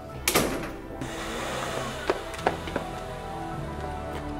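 A front door closing with a single thud about a third of a second in, followed by background music.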